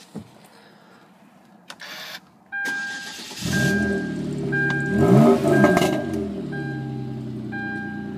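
A 2010 Hyundai Genesis Coupe 3.8 GT's V6 is started. After a click comes about a second of starter cranking, then the engine catches, flares up in revs and settles into a steady, still-raised idle. A warning chime beeps about once a second while it runs.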